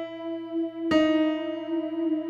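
Electronic keyboard with a piano sound playing a melody slowly, one note at a time with one finger. One note is still ringing as a second note of about the same pitch is struck about a second in.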